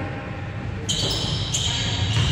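Basketball being played on a hardwood gym court: footfalls and ball thuds, with high sneaker squeaks starting about a second in and again about half a second later.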